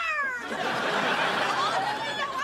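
A woman's drawn-out, anguished wail that falls in pitch and breaks off about half a second in, followed by a loud, noisy din of overlapping cries.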